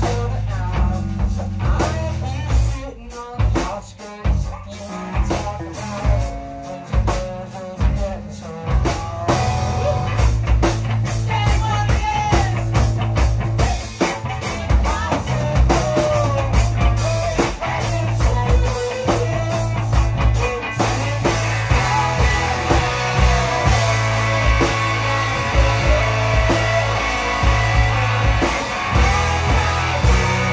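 Indie rock band playing live: a drum kit, bass and electric guitar, with two voices singing. The drums hit in a broken, stop-start pattern at first, then the full band plays steadily from about ten seconds in.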